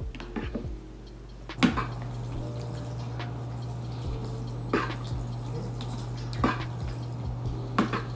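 Metal fork clinking and scraping against a ceramic bowl while stirring and lifting wet, saucy instant noodles: a few sharp clinks, the loudest about a second and a half in, over a steady low hum.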